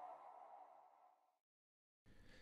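The last of an electronic logo jingle dying away, fading out completely about a second and a half in and leaving dead silence.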